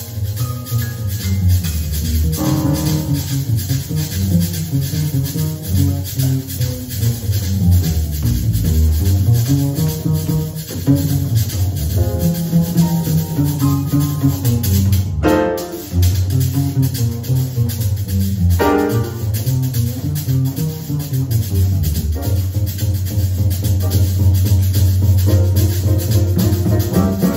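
Live Latin jazz: a double bass played pizzicato, its moving line of low notes the loudest part, over piano chords, shaken maracas and congas.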